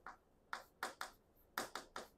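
Chalk on a chalkboard writing a word: a string of faint, short taps and scratches, about seven strokes in two seconds.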